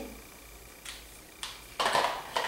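Felt-tip markers being handled: a couple of faint clicks, then a short, louder rustle near the end, as a yellow highlighter is put down and a green marker is taken up.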